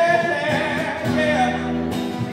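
A man singing a soul song into a microphone over an instrumental backing, holding and bending drawn-out notes.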